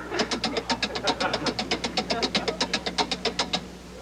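Game-show vote-tally sound effect: a rapid, even run of electronic ticks, about ten a second, while the audience-vote percentages count up on screen. The ticks stop shortly before the end.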